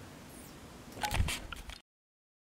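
Handling noise from a hand-held camera: a short burst of rustles, clicks and dull knocks about a second in as the recording is stopped, then the sound cuts off abruptly.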